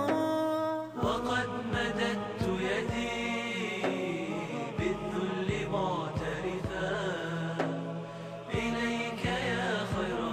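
Arabic nasheed interlude: a male chorus chanting a sustained melody over a steady beat, between the lead singer's verses. The sound is a transfer from an old cassette tape.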